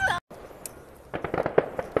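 Several sharp pops in the second half, over a faint background hiss.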